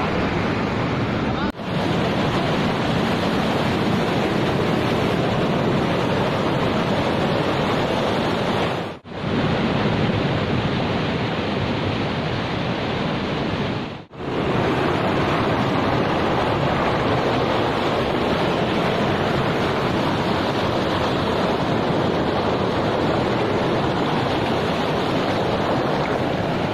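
Rushing water of a fast, rocky mountain stream, a steady, loud rush that cuts out briefly three times: about a second and a half in, about nine seconds in and about fourteen seconds in.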